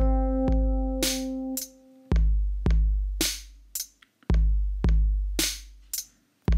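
GarageBand drum-machine beat played back on an iPad: a deep kick drum with a long low tail twice, then a snare hit, repeating about every two seconds. An electric piano note is held over the first beat, and the beat stops at the end.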